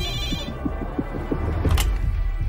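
Red ambulance emergency phone's bell ringing, stopping about half a second in. A low pulsing throb follows, with a short clunk near the end as the handset is lifted.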